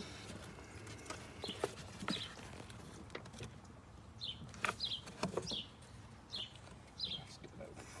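Plastic PCV valve being worked into a tight rubber grommet: scattered faint clicks and rubs, with short high chirps several times.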